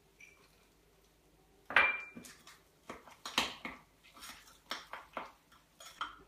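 A metal spoon clinking against a ceramic mug while stirring nuts into mug-cake batter: a string of irregular clinks starting a little under two seconds in, the first ringing briefly.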